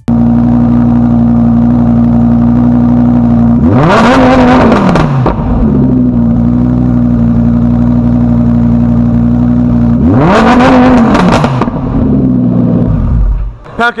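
A Lamborghini supercar's engine idling loudly, blipped twice with a quick rise and fall in revs, about four seconds in and again about ten seconds in, settling back to idle each time.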